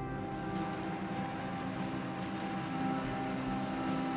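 Steady drone of a 2008 Case IH 2588 combine's diesel engine running, a low hum with a fixed tone that does not change.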